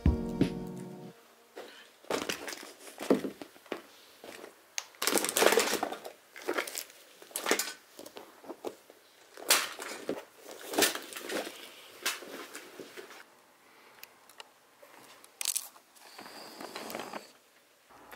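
A paper bag being handled: irregular bursts of paper crinkling and rustling with sharp crackles and quiet gaps between them. Background music stops in the first second.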